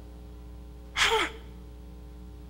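A man's short, sharp breath into a handheld microphone, a gasp about a second in, over a faint steady hum.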